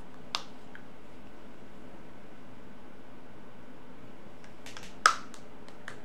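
A few sharp clicks of computer keys: one about a third of a second in, then a short cluster about five seconds in, the first of which is the loudest. They sound over a steady background hiss.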